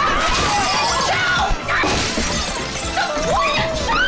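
Glass smashing several times during a scuffle between two people, with music playing underneath.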